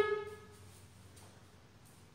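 The end of a drawn-out, sing-song spoken "down" fading out in the first half-second, then quiet room tone with a faint low hum.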